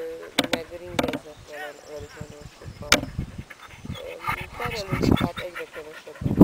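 Intermittent talking, with a few sharp clicks about half a second, one second and three seconds in.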